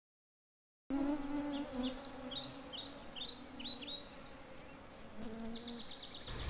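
An insect buzzing close by, its pitch wavering, over a run of short, repeated, downward-sliding bird chirps, with a quick trill near the end. The sound starts about a second in.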